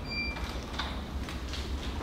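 Steady low room hum, with a brief high squeak at the very start and a few faint clicks.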